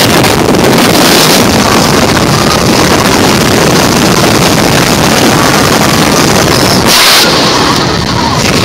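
Heavy wind buffeting the microphone mixed with road noise from moving along a rough dirt road, loud and steady.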